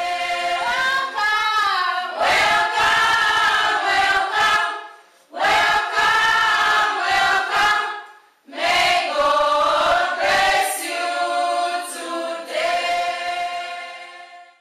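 Choir singing a slow piece as soundtrack music, in three long phrases with short breaks between them, fading out near the end.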